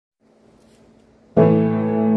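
Piano playing in A minor: after a second of faint background noise, a chord is struck about 1.3 seconds in and held, ringing on.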